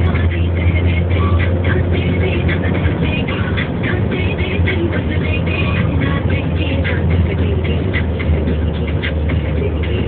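Steady low drone of a moving road vehicle's engine and tyres heard from inside, with music playing over it.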